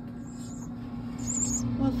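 Nestling grackles begging: two thin, high-pitched wavering calls, the second near the middle, over a steady low hum.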